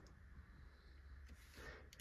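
Near silence: faint room tone, with a soft faint rustle and a small click near the end.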